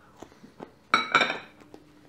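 A small glass of sauce set down on a kitchen worktop: a clink about a second in that rings briefly, after a couple of faint clicks.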